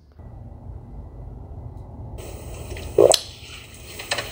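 Steady hiss and room noise of a TV broadcast's sound, picked up off the set in a room, with one short sharp noise about three seconds in.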